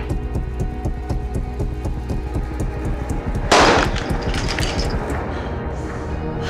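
Tense film-score music with a steady ticking pulse; about three and a half seconds in, a single loud gunshot cracks and rings out.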